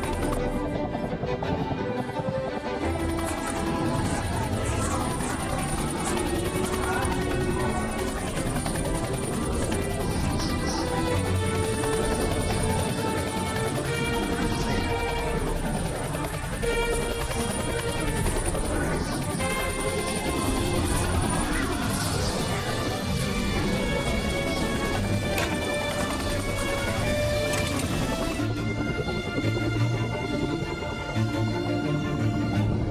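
Background music score of sustained notes that shift in steps every second or so, over a steady rushing wash of sea-wave sound effects.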